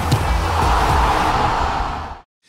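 Short music transition stinger between segments: a whooshing swell of noise over a low rumble that builds to a peak about a second in, then drops away at the end.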